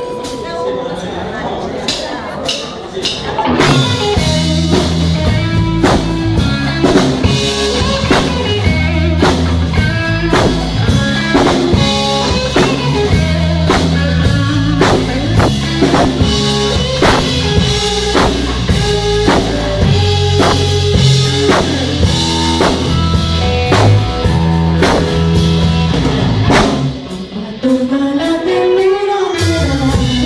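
Live rock band playing an instrumental intro: electric guitar alone at first, then drums and electric bass come in with a steady beat about three and a half seconds in. The band breaks off briefly near the end.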